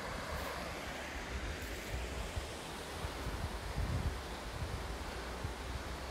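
The River Tavy running over shallow rocky riffles, a steady rushing noise, with wind buffeting the microphone in uneven gusts.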